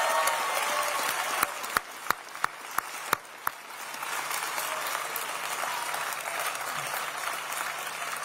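A room full of people applauding, with a few cheers at the start. For about two seconds, one person near the microphone claps loudly and evenly, about three claps a second, over the crowd. The applause then carries on.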